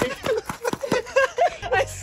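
A man's voice laughing and calling out while he runs up, with short sharp footfalls on gravel.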